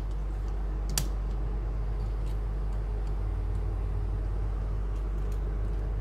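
Steady low hum with a single sharp click about a second in and a few faint ticks after it, from a wire hook and plastic cut-out shape being handled as the shape is hung on the stand.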